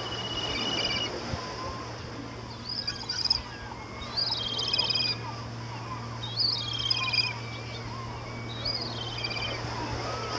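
Birds calling: a high, stuttering call comes about every two seconds, with fainter short calls in between, over a steady low hum.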